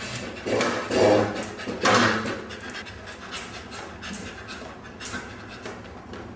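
A dog panting in loud breathy bursts over the first two seconds, then more faintly, with a few light clicks.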